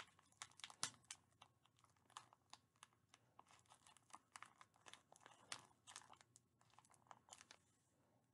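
Faint crinkling of a plastic gummy-candy bag being handled at its top, a quick irregular run of small crackles throughout.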